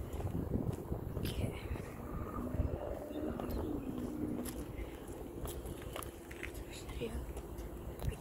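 Car traffic in a busy parking lot with a steady low rumble, heard through a phone microphone with wind and handling knocks. Faint, indistinct voices can be heard in the middle.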